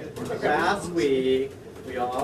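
A man's voice over a microphone making drawn-out vocal sounds rather than clear words: a pitch that sweeps up, then a held tone that falls slightly.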